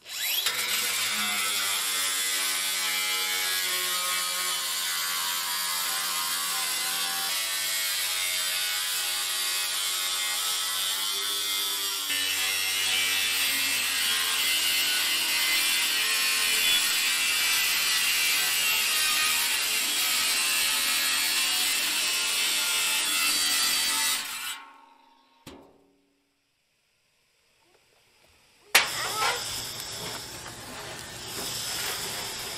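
Cordless angle grinder with a cut-off wheel running continuously while slicing through the steel wall of a metal drum to cut its bottom off, a loud whine with a gritty cutting noise. It stops and winds down about 24 seconds in; near the end there is a single loud knock.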